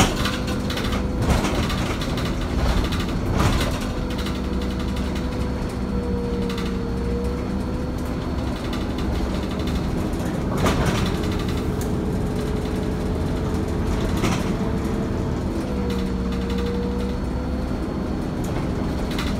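RTS city bus running under way, heard from inside: a steady engine and drivetrain rumble with a whine that wavers a little in pitch, and a few sharp knocks and rattles now and then.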